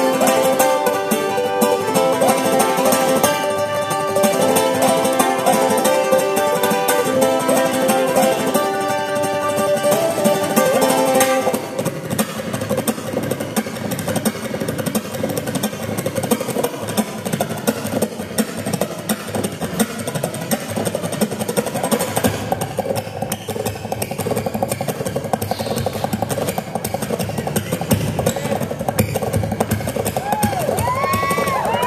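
Solo ukulele played live in a banjo-style piece: a clear picked melody for about the first eleven seconds, then a denser, noisier strummed passage.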